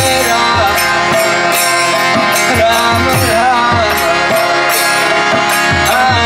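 Live kirtan: a man singing a devotional chant over a sustained harmonium, with a mridanga drum's bass strokes sliding down in pitch and a bright jingle recurring on the beat.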